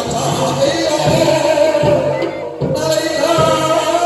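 Live accompaniment for a Soreng dance: drums beating a rhythm under a sung melody.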